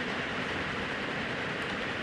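Steady low hiss of background room noise and microphone noise, with no distinct event.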